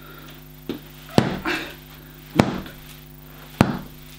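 Three thumps about a second apart, with a fainter knock before the first: tennis balls on a string, swung as an improvised flail, striking a punching bag.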